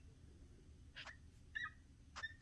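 Dry-erase marker writing on a whiteboard: a short stroke about a second in, then a brief high squeak of the marker tip about half a second later.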